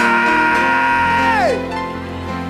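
A man's voice holding a long, high wordless cry that falls away in pitch about a second and a half in, over sustained keyboard chords.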